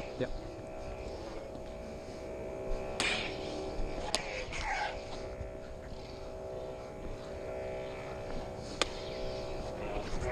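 Combat lightsaber soundboards humming steadily, with sharp clash hits about three seconds in, again a second later, and near the end, and a swooping swing sound in between.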